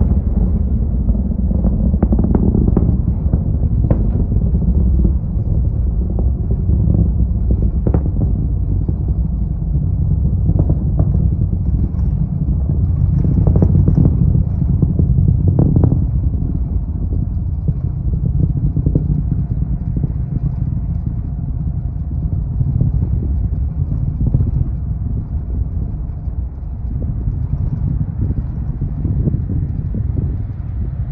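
Falcon 9 rocket's nine first-stage Merlin engines rumbling during ascent: a loud, deep, continuous rumble with scattered crackles, strongest in the first half and easing a little toward the end.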